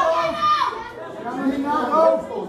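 Indistinct voices of people talking, with a short lull about a second in.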